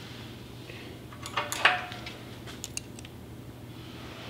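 A small metal pick clicking and clinking against a V-twin engine's steel cam sprocket and cylinder head: a cluster of sharp taps with one short ringing clink about a second and a half in, then a few lighter clicks, over a steady low hum.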